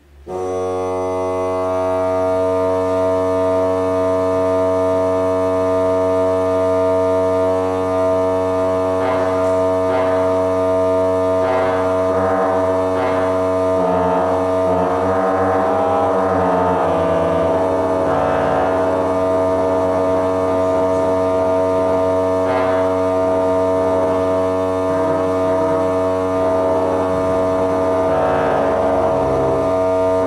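Pipe organ coming in suddenly and loudly with full, held chords over the pedals, then playing on without a break. A steady low drone stays unchanged beneath the shifting harmony, which fits the ciphering bottom F sharp of the Pedal Trombone: a stuck pedal reed note sounding on its own.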